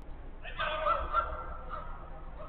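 A player's loud shouted call across a five-a-side pitch. It starts about half a second in and is held for about a second and a half.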